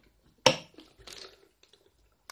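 Clear plastic bag crinkling as the ABS project box inside it is handled. One sharp crinkle about half a second in is the loudest sound, followed by softer rustling.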